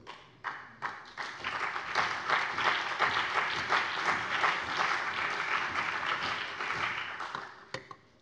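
Applause in a parliament chamber: many people clapping, starting about half a second in, building over the first two seconds, then fading away and stopping shortly before the end.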